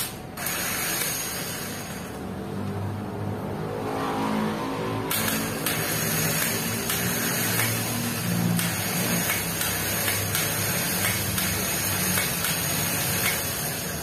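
Gear-reduction starter motor bench-tested off a car battery: a sharp click as it is connected, then the motor spins freely with a steady mechanical whir, rising in pitch and getting louder about four seconds in. It runs again after being cleaned.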